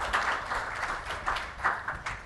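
Audience applauding, the clapping thinning out into scattered claps near the end.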